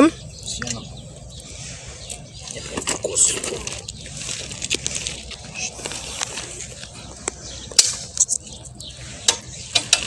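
Scattered small metallic clicks and knocks of a wrench and hands working at the rear axle of a child's bicycle, loosening the fittings to take off the training wheels.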